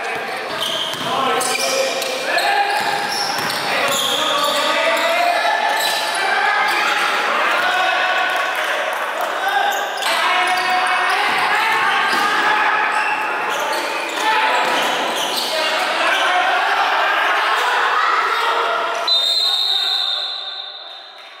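Voices of players and spectators calling out across an indoor sports hall during a basketball game, with a basketball bouncing on the wooden court.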